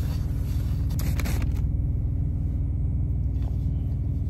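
Steady low rumble of an idling diesel truck engine. About a second in there are brief rubbing and rustling sounds of a baby wipe on a glass pan lid.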